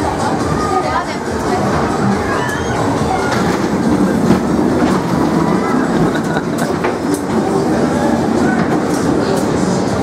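Ghost-train ride cars rolling along their track, a steady rumble and rattle with a few sharp clicks.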